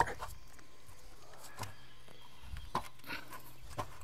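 Faint handling noise from foam-core insulated wall panels being lifted and fitted together: a few soft, scattered knocks and scrapes over a quiet background.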